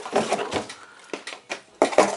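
Plastic plumbing fittings being handled in a cardboard box: rustling and light clattering, then a few short knocks, with a louder one near the end.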